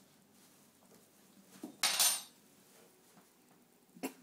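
A short clatter of hard objects knocking together about halfway through, otherwise near quiet, ending with a single click.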